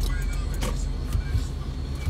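A car driving slowly, heard from inside its cabin: a steady low engine and road rumble.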